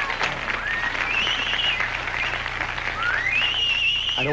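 Studio audience applauding and laughing, with a couple of high-pitched calls rising above the clapping, the longer one near the end.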